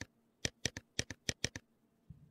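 A quick run of sharp clicks, about six a second, like keys being typed on a computer keyboard, stopping a little past halfway.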